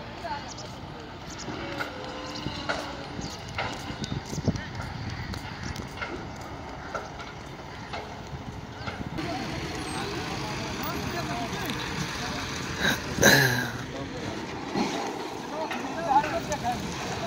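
Construction-site ambience: heavy machinery running under scattered voices of workers, with a loud short burst of noise about thirteen seconds in.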